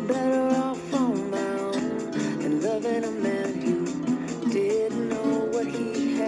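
Acoustic guitar strummed in a steady rhythm, with a man's voice singing a melody over it.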